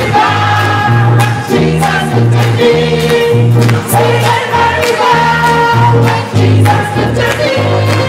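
Gospel choir singing with a live church band of piano, drum kit and bass, the bass line moving from note to note about twice a second.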